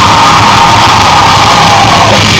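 Live rock band playing very loud in a club, heard from the crowd, with a sustained high note held through that falls away at the end.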